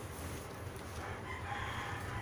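A rooster crowing faintly in the background, starting about a second in and held for over a second.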